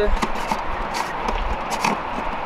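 Light clicks and rustling as hoses and fittings are handled inside an RV's water-hookup compartment, over a low rumble.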